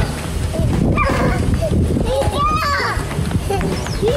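Young children's voices calling out and squealing in short high cries as they play and run about, over a steady low background hum.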